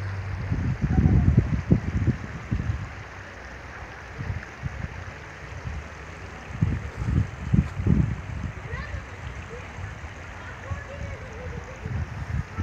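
Wind buffeting the microphone in gusts, loudest about a second in and again past the middle, over a steady rushing hiss.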